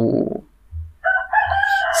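A rooster crowing: one long call that starts about a second in, steps up slightly in pitch and is held.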